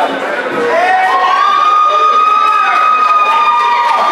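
Crowd cheering and shouting in a hall, with one high voice holding a long yell from about a second in until near the end.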